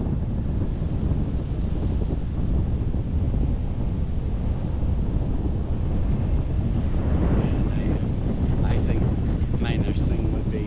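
Wind buffeting the microphone of a camera mounted on a parasail bar high in the air: a steady, low rumble that does not let up.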